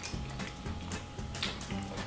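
Quiet background music with a steady low bass, with scattered small mouth clicks from chewing a dry, crumbly gluten-free brown rice flour pizza crust.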